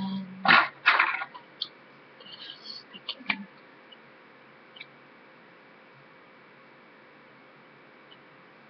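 Handling noise from makeup items being picked up and opened: two loud rustling scrapes within the first second or so, followed by a few light clicks. A brief hummed voice sound comes at the very start.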